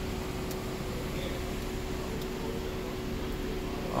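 BMW F33 428i running at idle: a steady hum with a faint, even whine held at one pitch.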